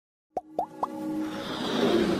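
Logo intro sound effects: three quick rising pops a quarter second apart, each a little higher than the last, then a swelling electronic music riser that builds steadily.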